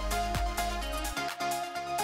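Electronic background music with a steady beat; the deep bass drops out a little past halfway.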